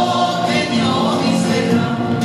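Traditional Spanish folk dance music with a group of voices singing held notes.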